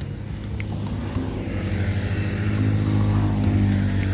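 A motor vehicle passing on the road beside the pond: a low engine hum and tyre noise that grows louder to a peak about three and a half seconds in, then begins to fade.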